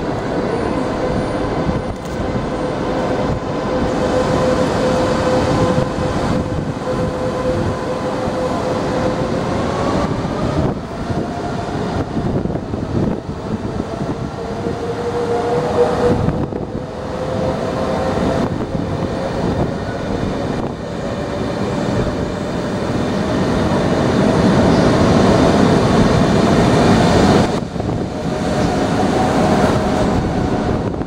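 V250 high-speed electric trainset pulling away, its drive giving a steady whine that rises in pitch in steps as it gathers speed, over the running rumble of its wheels on the rails. The rumble grows louder as the long train draws past, loudest a few seconds before the end.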